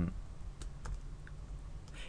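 A few sparse, light clicks from a computer keyboard, spaced out over two seconds against faint background hiss.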